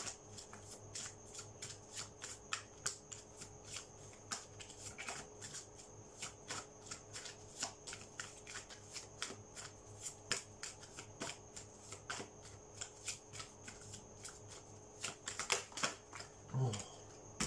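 A deck of Messages from Your Angels oracle cards being shuffled by hand: a continuous run of soft, irregular card flicks and slaps, several a second.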